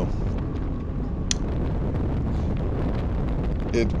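Wind buffeting a bicycle-mounted camera's microphone while riding at speed: a steady low rumble, with one short sharp click a little over a second in.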